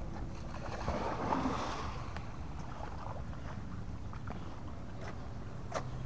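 A red-nose pit bull swimming in a creek, faint water splashing, with a brief louder swell of splashing about a second in. Steady low wind rumble on the microphone underneath.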